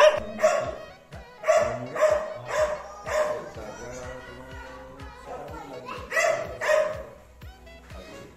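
A dog barking in short, sharp single barks, about two a second through the first three seconds, then a lull and two more barks a little after six seconds in.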